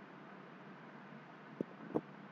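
Steady low background hiss of a room heard through the microphone, with two brief knocks near the end.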